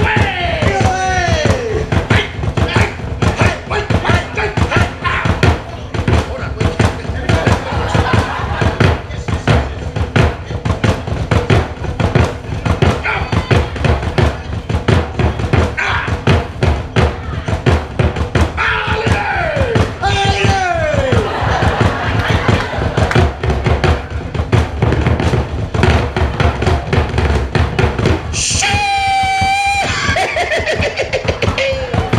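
Fast, steady drumming on Tongan wooden drums beaten with sticks, a lead drummer and a beginner following his beat. Shouted calls with falling pitch cut through near the start and about two-thirds of the way in, and a long held call rings out near the end.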